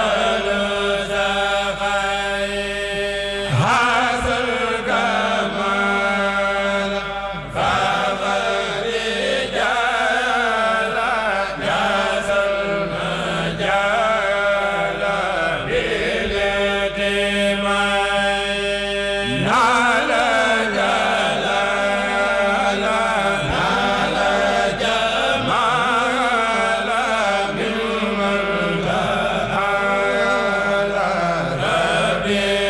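A group of men chanting a Mouride khassida (Arabic religious poem) together into microphones, in long drawn-out melodic lines. Short breaks between phrases come about four seconds in, near eight seconds and near twenty seconds.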